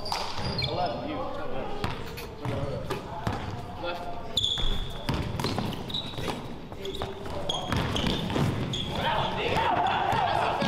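A basketball dribbled on a hardwood gym floor with repeated bounces, along with short high sneaker squeaks and players' voices, in an indoor gym.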